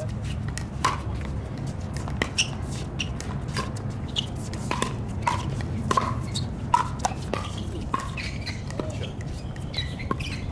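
Pickleball paddles striking a hard plastic ball in a fast doubles rally: a string of sharp pocks, roughly one or two a second, with ball bounces on the hard court in between. Under them runs a steady low rumble.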